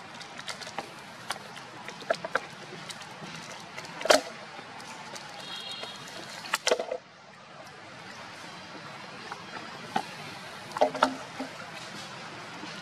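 Thin plastic water bottle crackling and crinkling in irregular sharp bursts as a young macaque handles and bites it. The loudest crackles come about four seconds in, again near seven seconds, and near eleven seconds, over a steady background hiss.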